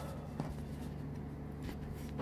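Hand and pen moving over a sheet of paper: soft rubbing, with two light taps about half a second in and near the end, over a steady low hum.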